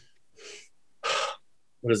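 A person breathing in, twice: a faint breath about half a second in, then a louder, sharp intake of breath about a second in, just before speaking.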